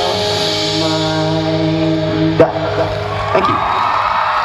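Live rock band holding the song's final sustained chord on guitars and bass, with two sharp drum hits about two and a half and three and a half seconds in. The crowd begins cheering near the end.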